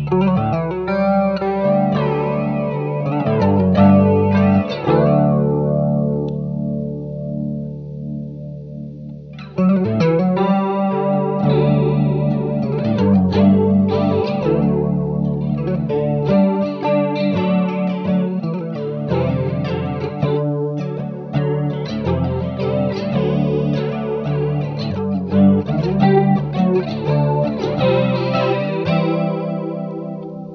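Telecaster electric guitar played through a Chicago Iron Tycobrahe Pedalflanger into a Fender Princeton amp, the notes and chords swirling with the pedal's sweeping flange modulation. A chord rings out and dies away for a few seconds before the playing picks up again about nine and a half seconds in.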